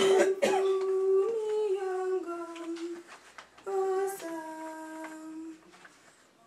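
A single woman's voice singing, or humming, slow, long-held notes in two phrases, with small steps in pitch between them. A cough comes right at the start.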